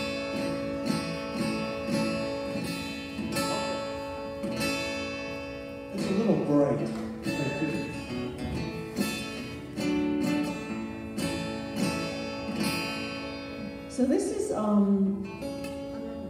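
Acoustic guitar playing strummed chords in a steady rhythm, with a voice coming in briefly about six seconds in and again near the end.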